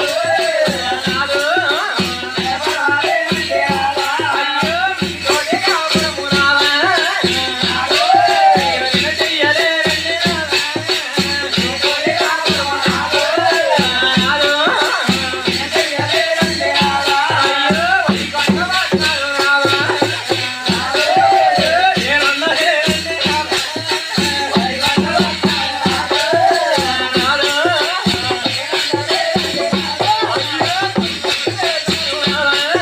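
Live folk dance music: drums keep a steady beat while small metal hand cymbals clash in rhythm, under a wavering, bending melody line.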